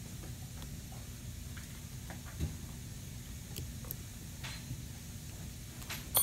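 Faint handling noise of dental pliers pulling a wedge from between the teeth of a plastic typodont: a soft thump and a few light ticks over a steady low room hum.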